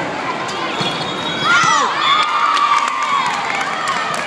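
Volleyball players and spectators shouting and cheering as a point is won: high-pitched shrieks break out about a second and a half in, followed by one long held yell, over the murmur of a large hall.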